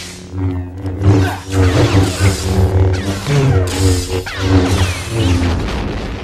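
Orchestral film score playing loudly, mixed with the hum, swings and clashes of lightsabers in a duel.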